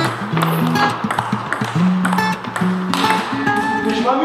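Background music with a bass line moving between steady notes, with short clicks over it.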